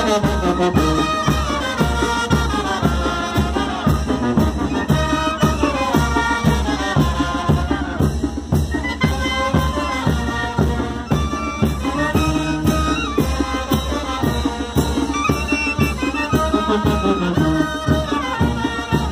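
Mexican brass band (banda de viento) playing chinelo dance music: trumpets and trombones carry the melody over sousaphone bass and a steady beat, heard from close among the players.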